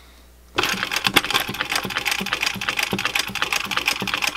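Singer 111W101 industrial walking-foot sewing machine, driven by a servo motor, starting up about half a second in and then running steadily, stitching through folded denim with a fast, even clatter of needle strokes.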